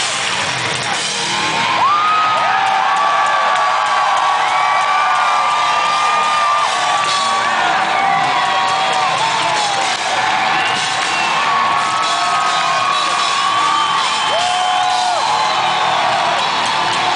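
Live heavy rock band playing loud, with distorted electric guitar, drums and long held lead notes that bend and slide in pitch. The crowd whoops over the music.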